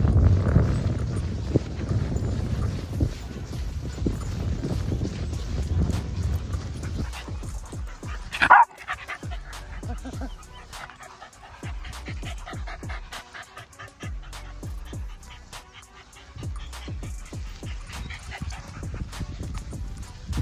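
Dogs playing together on grass, with one sharp bark about eight seconds in, the loudest sound. A low rumble fills the first seven seconds.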